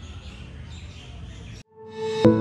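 Faint outdoor background noise with a few thin bird chirps, cutting off abruptly near the end; a single steady electronic music tone starts just afterwards.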